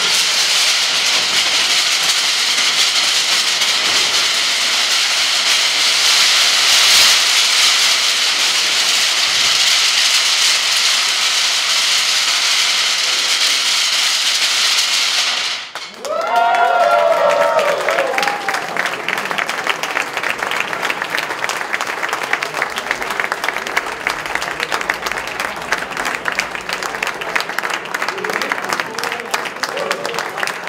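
A tall sculpture of stacked thin wooden slats collapsing: a continuous, dense clattering of wood falling on wood and on the stone floor for about fifteen seconds, which stops abruptly. Then the crowd cheers and applauds.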